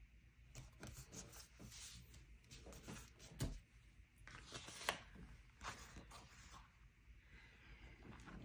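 Faint rustling and light clicks of paper and stickers being handled on a tabletop, with a sharper tap about three and a half seconds in and another just before five seconds.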